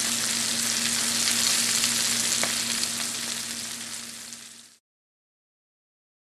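Cornmeal-coated panfish fillets sizzling in butter in a cast-iron skillet, a steady hiss with a faint low hum under it. The sizzle fades and stops short a little before five seconds in.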